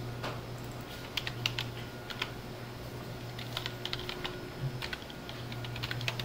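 Computer keyboard typing: scattered keystrokes in short, irregular bursts over a steady low hum.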